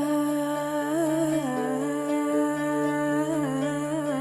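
A woman singing a slow, improvised Arabic vocal line in long held notes, bending into ornamented melismatic turns a few times, over a steady low drone.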